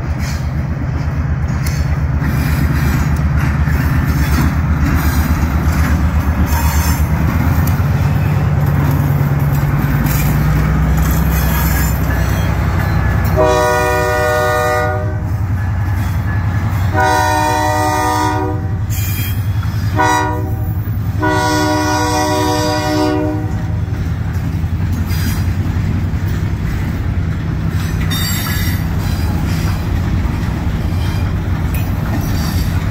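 Diesel switcher locomotive running as it approaches and passes close, sounding its horn for a grade crossing about halfway through in the standard long, long, short, long pattern. Boxcars then roll past with the rumble and clatter of their wheels on the rails.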